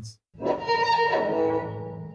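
Google Tone Transfer's machine-learning violin synthesis playing back an imported studio recording: a string-like note that starts suddenly about a third of a second in and fades away over a low steady hum.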